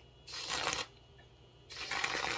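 FineDine aluminium whipped-cream dispenser held nozzle-down, spurting gas-charged cream with a hiss in two short bursts, the second starting near the end.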